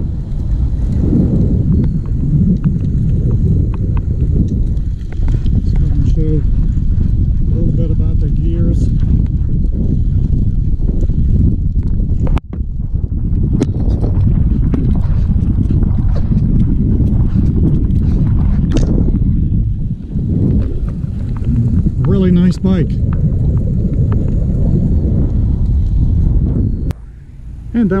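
Wind buffeting the microphone with the rumble of bicycle tyres rolling on a paved path, a loud, steady low rush. It breaks off for an instant about halfway through and drops away just before the end.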